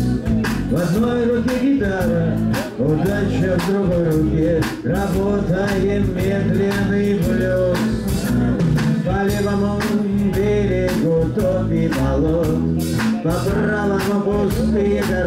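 Live band playing: strummed acoustic guitar, bass and drum kit keeping a steady beat, with a wavering melody line carried over them.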